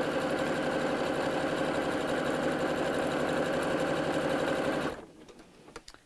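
Pfaff Quilt Ambition electric sewing machine running steadily at speed, stitching through layers of burlap. It stops abruptly about five seconds in, and a couple of faint clicks follow.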